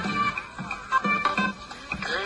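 Upbeat pop dance music with a steady beat, a little sparser in the middle of the stretch.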